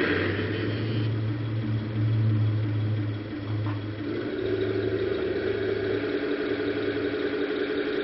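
Tamiya 1/16 scale King Tiger radio-controlled model tank running, a steady engine-like hum; the sound shifts, with a higher tone added, about four seconds in.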